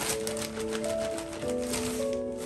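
Background music of held, overlapping notes, over the crinkling of a thin plastic shower cap being handled.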